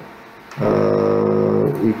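A man's drawn-out hesitation sound "aaa", held on one steady pitch for about a second, then the start of another word.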